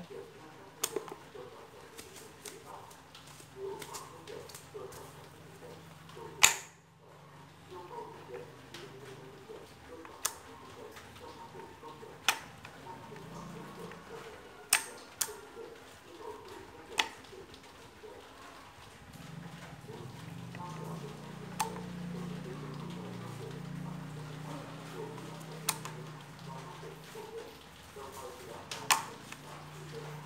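Gear selector and shafts of a small three-speed reduction gearbox with a built-in hydraulic dump pump being worked by hand: about ten sharp metallic clicks and clunks at irregular intervals as it is shifted. The loudest clunk comes about six and a half seconds in. A low hum grows stronger in the last third.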